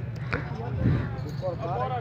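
Men's voices talking, with a short sharp knock about a third of a second in.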